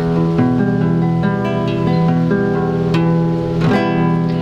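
Classical guitar played fingerstyle on an E minor chord: the thumb and ring finger alternate, plucking one string after another across pairs of strings one string apart, so the notes ring over each other. The notes come evenly, about two or three a second.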